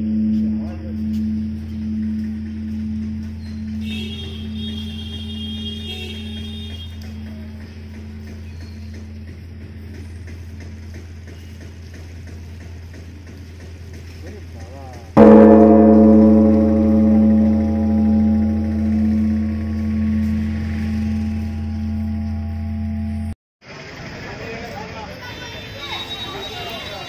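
Large hanging temple bell struck with a suspended wooden log. It gives a deep, long ringing hum that pulses as it slowly fades. A fresh strike about fifteen seconds in rings out loud again, then the sound cuts off abruptly near the end and street and crowd noise follows.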